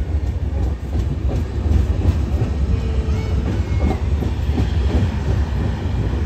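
Padatik Express running at speed, heard from inside a sleeper coach: a steady low rumble of wheels on rails with a light clickety-clack.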